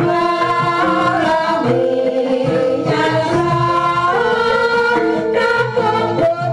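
Javanese gamelan music with female sinden voices singing long held notes that waver and bend in pitch over the ensemble.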